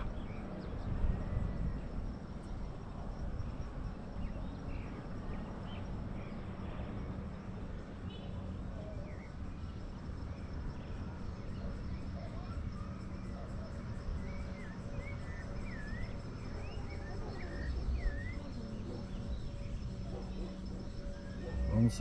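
Outdoor ambience in scrubland: insects droning steadily on a high note over a low rumble, with a run of short bird chirps in the second half.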